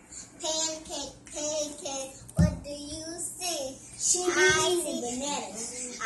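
A young girl singing, her voice gliding up and down in pitch, with a single short thump about two and a half seconds in.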